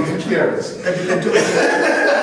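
Men chuckling and laughing briefly amid speech, reacting to a remark.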